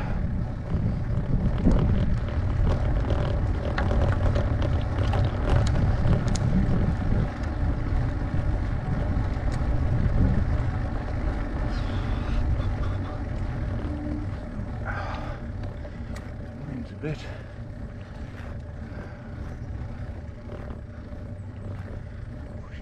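Steady low rumble of wind and road noise on a bicycle-mounted camera's microphone as the bike climbs slowly on a tarmac lane, growing quieter over the second half.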